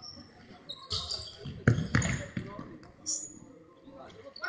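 A futsal ball being kicked and passed on an indoor court: a few sharp thuds, the loudest two close together about halfway through, ringing in the sports hall. Short high squeaks of shoes on the wooden floor and players' calls come in between.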